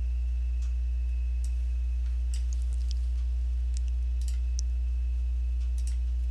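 Steady low electrical hum on the recording, with a faint steady high tone and a few faint mouse clicks scattered through.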